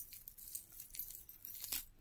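A thin silver-coloured metal chain necklace faintly clinking and jingling as it is moved through the fingers: a string of light, irregular metallic ticks, with a slightly louder click near the end.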